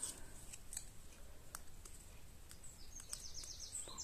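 Faint handling of cardstock: a few light clicks and rustles as small paper leaves are picked up and slipped between paper flowers, with a quick run of small ticks near the end.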